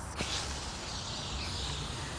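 Water spraying from a garden hose through a spray nozzle: a steady hiss that starts suddenly right at the beginning.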